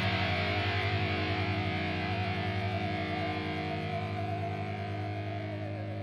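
Rock music: a distorted electric guitar chord held and left ringing, slowly fading, with a wavering high note above it.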